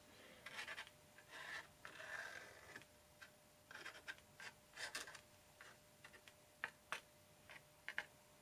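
Faint scratching of a white paint marker's tip on watercolor paper in short strokes, with a few light ticks in the second half.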